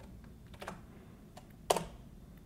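A few faint key presses on a computer keyboard, the loudest near the end.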